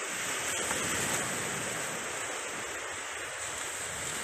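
Sea surf breaking and washing up a beach: a steady rush of water.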